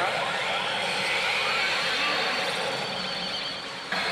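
Pachinko parlor din of steel balls and machine sounds, under the electronic reach effects of a CR Shin Hokuto Musou pachinko machine. A sudden sharp hit sounds right at the end, as the machine's screen switches to its 'NEXT' effect.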